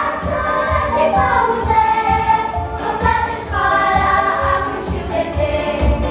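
A group of young girls singing together over recorded backing music with a steady beat.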